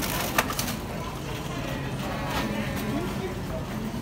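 Supermarket background noise: indistinct voices and the clatter of handling, with a sharp clatter about half a second in.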